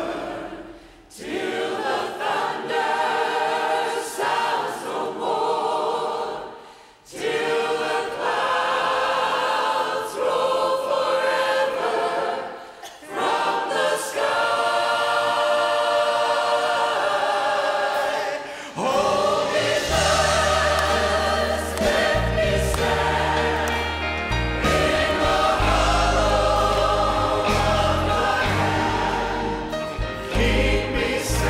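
Church choir singing a gospel hymn in sung phrases broken by short pauses. About two-thirds of the way through, deep bass notes from the accompanying band come in under the voices.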